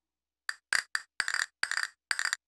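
Castanets mounted on a wooden block, clicked in a quick rhythm. About half a second in, single sharp clicks begin, mixed with short rapid rolls of clicks.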